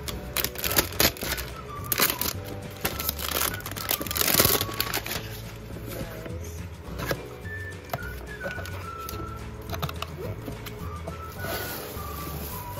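Plastic wrap crinkling and tearing as it is peeled off a cardboard box, with clicks and scrapes of the box being handled and opened; the loudest crinkle comes about four seconds in, and a plastic bag rustles near the end. Background music with a steady low beat plays underneath.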